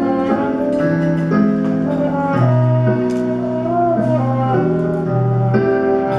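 Small jazz combo playing an instrumental passage of a slow ballad: a trombone carries the melody in long held notes over piano and a slow bass line.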